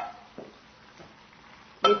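Quiet, with two faint light clinks of metal tongs against a pan as cooked beef slices are pushed out of it into a wok. A spoken word comes near the end.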